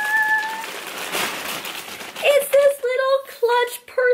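A sung "da-da-da!" fanfare ending on a held note. Then about a second and a half of paper and plastic rustling as a purchase is pulled out of a shopping bag and its tissue paper. From about two seconds in, a woman hums a tune in short, steady notes.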